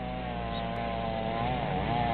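A chainsaw running steadily as firefighters cut up fallen tree branches; its pitch dips briefly and picks back up about one and a half seconds in, as if bogging in a cut.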